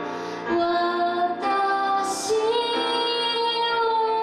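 A woman sings a slow Japanese ballad while accompanying herself on a grand piano, holding long notes, with a hissing consonant about halfway through.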